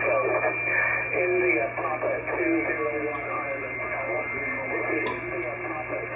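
Single-sideband CB voice traffic from distant stations on 27.385 MHz, received on an Icom IC-746 transceiver: thin, narrow-band speech with a steady low hum and a faint steady whistle under it. A sharp click sounds about five seconds in.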